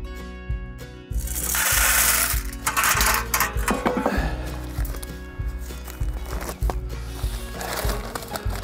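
Background music with a steady beat. About a second in, a loud hissing rush lasts over a second: gravel being poured from a bowl into a galvanised metal tub.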